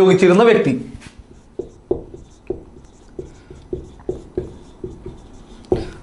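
Marker pen writing on a whiteboard: a run of short, light strokes and taps, a couple a second, starting about a second and a half in.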